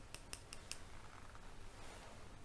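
Quiet make-up brush and eyeshadow handling close to the microphone: a quick run of about four crisp clicks in the first second, then a soft brushing swish near the end.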